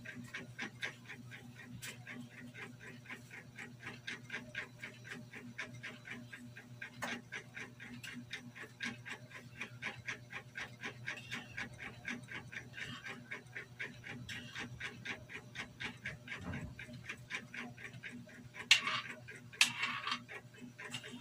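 A metal spoon stirring and scraping in a wide metal wok, making a rapid, fairly regular ticking of about four strokes a second over a low steady hum.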